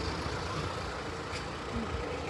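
Steady low rumble of motor traffic on a town street, a vehicle engine running close by.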